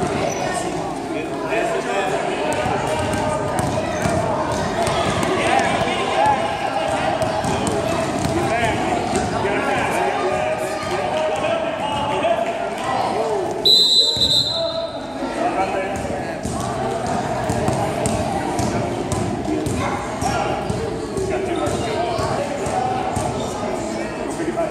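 Indoor youth basketball game in a large echoing gym: a ball bouncing on the hardwood court over steady chatter from spectators. A sharp referee's whistle blast comes about 14 seconds in.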